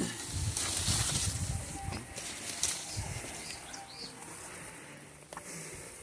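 Lime-tree leaves and branches rustling as limes are picked by hand, with a few light clicks, busiest in the first couple of seconds and then dying down.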